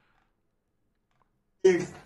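Near silence, a dead gap with no sound at all, then a voice starts speaking abruptly near the end.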